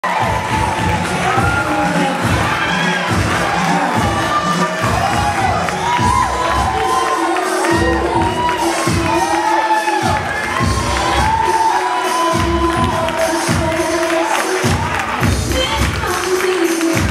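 A crowd cheering and shouting over music with a steady beat.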